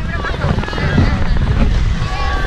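Wind rumbling on the microphone, mixed with the chatter of many people's voices around it.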